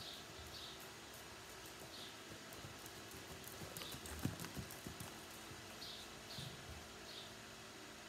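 Hoofbeats of a ridden horse on the soft sand footing of an indoor arena, growing louder as the horse passes close about four seconds in, then fading.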